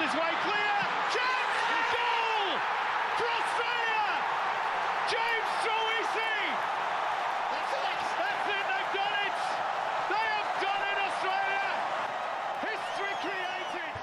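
Stadium crowd cheering loudly and without pause after a goal, a dense wall of many voices with individual shouts standing out above it.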